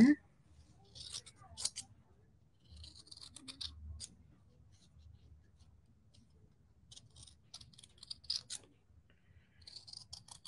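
Scissors snipping through wool felt, cutting out a small leaf shape: runs of short, crisp snips, with pauses between as the cut is turned.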